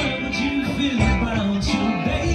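Music with guitar, and a man singing live into a microphone over it.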